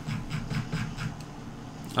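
A few computer keyboard keystrokes clicking at an uneven pace, over a low muffled rumble.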